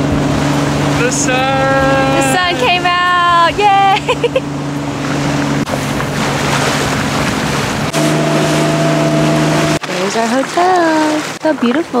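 Motorboat engine running with a steady low drone under a constant rush of water and wind as the boat cruises over the lake. A voice sounds in drawn-out, held tones about a second in.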